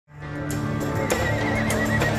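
Music fading in, with a horse whinnying over it for about a second near the end.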